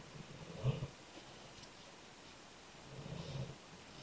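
Felt-tip marker dragging across a styrofoam tray, two short, faint, low rubbing strokes: one about a second in, the louder, and a longer one near the end.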